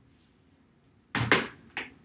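Near silence, then about a second in, three short knocks or thumps on a tabletop in quick succession.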